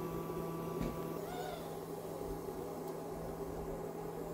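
A steady low hum, with a soft tap just under a second in and a faint, short call that rises and falls about one and a half seconds in.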